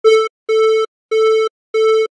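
A steady, buzzy synthetic tone chopped by a noise gate into four short pulses about two-thirds of a second apart, each starting and stopping abruptly. The gate is set to a fast attack and a 6 ms release, so it opens quickly and closes almost at once, which makes the sound seem to switch off between pulses.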